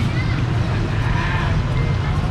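Steady low rumble of busy street traffic, with faint voices in the background.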